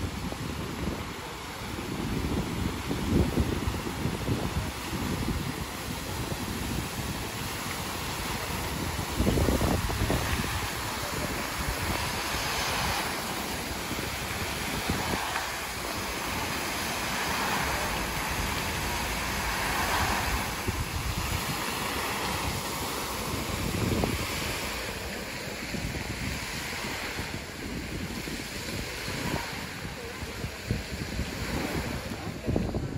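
Water from a plaza fountain's rows of vertical jets falling and splashing into its basin, a steady rushing that swells in the middle. Wind buffets the microphone in low gusts, strongest about three and nine seconds in.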